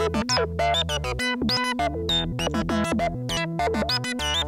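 Eurorack modular synthesizer playing a sequence from a Doepfer A-155 Analog/Trigger Sequencer under the control of an A-154 Sequencer Controller. It plays a fast run of short synth notes, several a second, many swooping in pitch, over a low bass line that moves in steps. The rhythm comes from switching between clock divisions.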